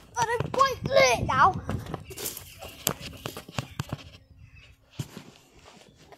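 A boy's voice making a quick run of high, wordless sing-song sounds that rise and fall, followed by knocks and rustling from the phone being handled.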